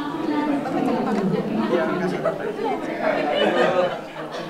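A group of people talking at once, overlapping chatter with no single voice standing out.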